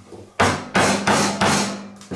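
A carving mallet striking the handle of a woodcarving gouge driven into a block of wood: four sharp knocks about a third of a second apart, each dying away quickly.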